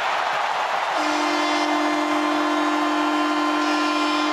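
Arena goal horn sounding a steady, held chord about a second in, over a cheering crowd, marking a home-team goal.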